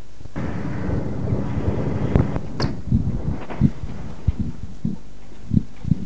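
Wind rumbling on the microphone, with irregular sharp knocks and bumps from handling.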